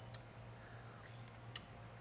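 Quiet room with a low steady hum and two faint clicks as fingers wipe the inside of a small ceramic bowl.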